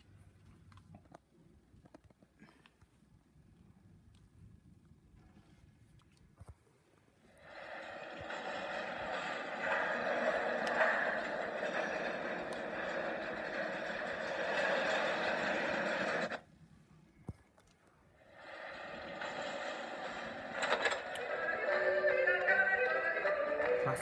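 Animated DVD menu's soundtrack playing through a television's speakers: quiet at first, then a dense wash of noise with voice-like sound about seven seconds in that cuts off suddenly about sixteen seconds in. It comes back a couple of seconds later, and music joins near the end.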